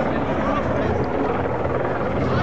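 Helicopter overhead, its rotor a steady low pulse beneath a crowd's talk.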